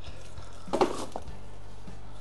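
A short rustle and scrape of cardboard packaging being handled, a little under a second in, over a steady low electrical hum.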